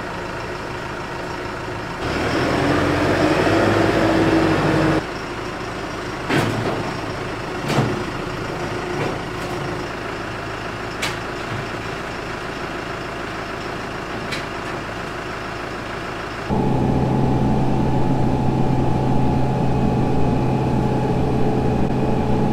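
Diesel farm tractor idling to warm up after a cold start in about eight degrees of frost, with two sharp metal knocks and lighter clicks from the loader attachments being handled. Near the end the engine is suddenly louder, with a steady low pulsing.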